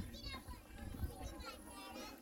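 Faint background voices of people talking outdoors, a few high-pitched, over a low rumble of wind on the microphone.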